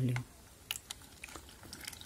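Water being poured over the top of foam-glass substrate in a plastic orchid pot, heard as a few faint, scattered clicks and ticks.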